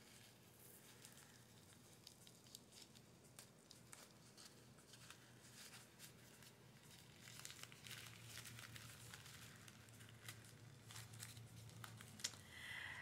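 Faint rustling and light scattered clicks of a small gift sachet being opened and its contents handled.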